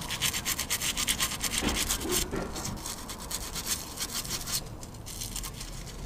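Sandpaper rubbed by hand over a painted brake caliper to strip the paint, in rapid back-and-forth scraping strokes that are strongest for the first couple of seconds and then ease off. The sandpaper is worn and falling apart.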